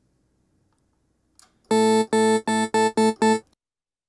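Vital wavetable synth patch, Squish Flange and Granular Upgrade wavetables with the second oscillator two octaves up, playing about seven short notes at one pitch, roughly four a second, starting a little before halfway in. The tone is bright and buzzy, its harmonics reaching high up.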